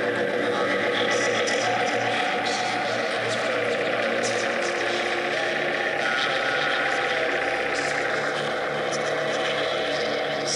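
Ambient electronic music: a dense, steady synthesizer drone of many layered sustained tones, with faint crackling streaks high above.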